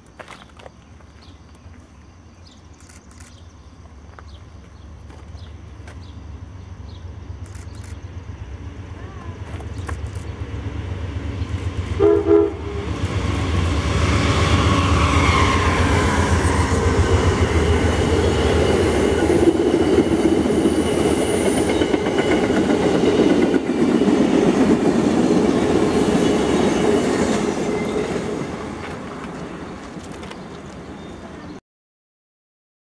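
Amtrak P42DC diesel-electric locomotive approaching with a rumble that grows louder, a short horn blast about twelve seconds in, then the passenger train passing close with wheels running on the rails, loud for about fifteen seconds and fading near the end.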